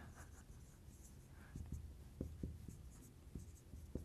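Dry-erase marker writing on a whiteboard: a faint run of short strokes as letters and numbers are written.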